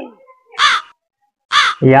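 A crow cawing twice, about a second apart: two short, harsh calls that drop in pitch.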